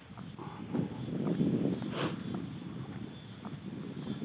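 Footsteps walking across grass, heard close up, with a few brief knocks, one sharp one about two seconds in.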